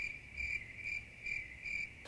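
Cricket chirping evenly, about five short high chirps in two seconds.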